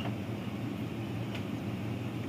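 Steady low mechanical hum of a shop's cooling equipment, with a faint click about one and a half seconds in.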